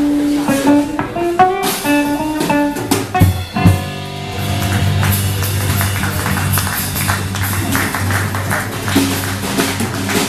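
A small live band playing a blues-tinged swing number, with guitar notes and quick runs. From about four seconds in, a long low chord is held.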